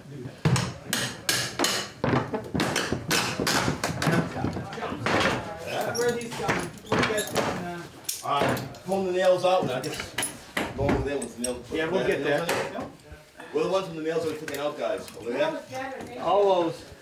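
Hammer knocking on old wooden floorboards, a quick run of sharp knocks through the first several seconds, as nails are worked out of the boards so they can be reused. People talk over the later part.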